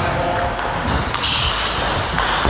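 Table tennis rally: the plastic ball clicking sharply off the bats and the table, several times in quick succession.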